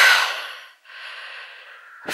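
A man breathing close to the microphone: a loud breath that fades out within the first second, then a quieter, longer breath.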